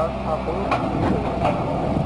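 Heavy truck engine running steadily at a low hum, with faint voices over it.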